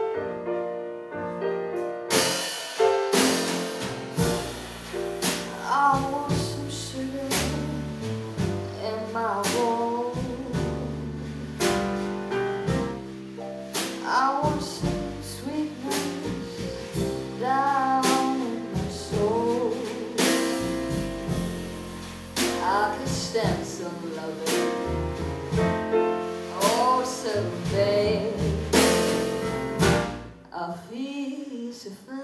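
Live blues song played on grand piano, alone at first, with drums and bass coming in about two seconds in. From about five seconds in, a woman sings over the band.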